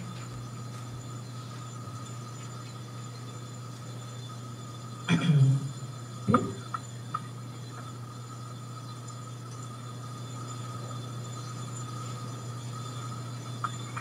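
A steady low electrical hum with a faint, thin high tone over it. About five seconds in comes a brief voice-like sound, and a sharp click follows about a second later.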